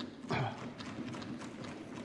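Scattered, irregular knocks and taps during a pause in a speech, with a brief voice or breath sound just at the start.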